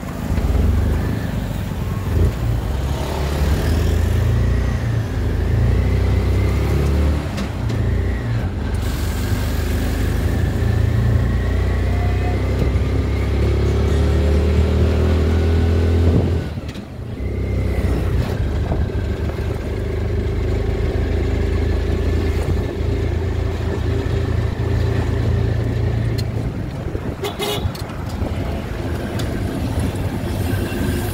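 Vehicle engine running while driving, its pitch rising and falling with speed, with a brief drop about seventeen seconds in.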